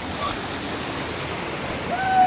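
Steady rushing of river water, with splashing from people swimming in it, and a brief faint voice near the start.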